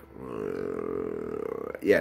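A man's long hesitation hum, one steady held "mmm" or "uhh" lasting about a second and a half while he thinks, followed by a spoken "yeah" near the end.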